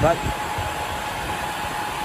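HPE BladeSystem c7000 enclosure's cooling fans running: a steady rush of air with a faint constant whine.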